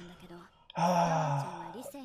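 A man's long, voiced sigh, about a second long, starting about three quarters of a second in and tailing off.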